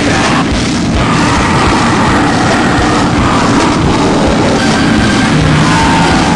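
Loud, dense heavy rock music.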